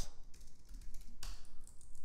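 Typing on a computer keyboard: irregular, scattered key clicks.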